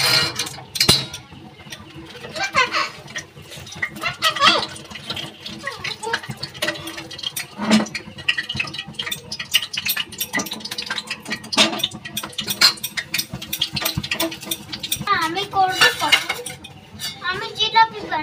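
Scattered light clinks and knocks of a metal spoon and stick against metal cooking pots while jalebis are turned in sugar syrup and lifted out of oil. Indistinct voices, one a child's, come and go in the background.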